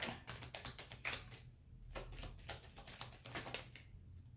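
Tarot cards being shuffled in the hands: a quick, irregular run of faint clicks and flicks, thinning briefly in the middle.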